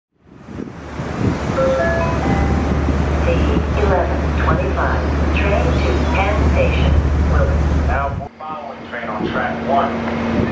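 Muffled, unintelligible station public-address announcement over a steady low rumble, with a short run of stepped tones near the start. About eight seconds in the sound cuts abruptly to a different steady hum with more announcement speech.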